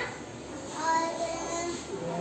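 A young girl's voice in a drawn-out, sing-song tone: one long vocal phrase with held notes, starting about half a second in.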